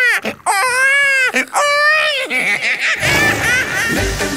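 A high-pitched, child-like voice wailing in a run of long, drawn-out cries that swell and fall, with no backing at first. About three seconds in, the song's band music with a bass beat comes in.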